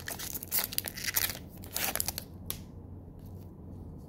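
Foil wrapper of a Magic: The Gathering booster pack crinkling and tearing as it is pulled open by hand, in quick rustling bursts that stop about two and a half seconds in.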